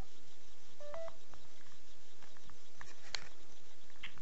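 Telephone line tones on an outgoing call as it connects: a faint steady tone with a few short beeps about a second in.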